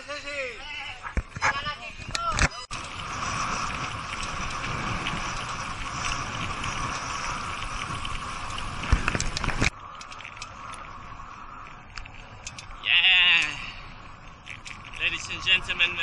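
Steady rushing wind and road noise on a camera riding along on a bicycle. It stops suddenly partway through and gives way to quieter road noise, with a short high wavering call near the end.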